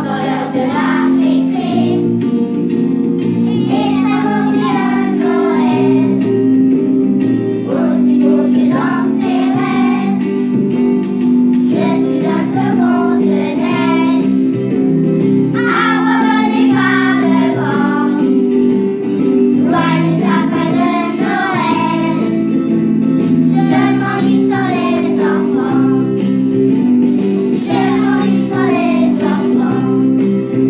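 A group of young children singing a song together over a steady instrumental accompaniment of sustained chords, in short phrases every few seconds.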